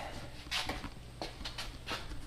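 Quiet garage room noise with a low steady hum, broken by a few soft knocks and scuffs from handling of the carried camera and footsteps on the concrete floor.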